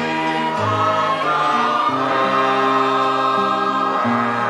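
Church choir singing a hymn in held, sustained notes.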